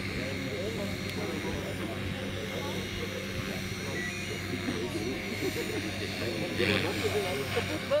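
Small electric RC helicopter (Align T-Rex 450) flying nearby: a steady rotor hum with a higher motor whine, under people talking in the background.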